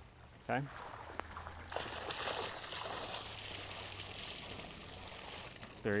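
Water streaming out of the bottom holes of a hollow plastic pool table and splashing into shallow pool water. It is faint at first, then becomes a louder, steady rush about two seconds in that holds until near the end.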